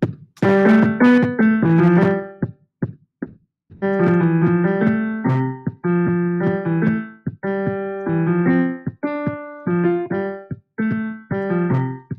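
BandLab's sampled grand piano played live in C major pentatonic in quick runs of notes, over a drum-machine beat at 150 bpm. About two and a half seconds in the piano stops for about a second, leaving only the beat.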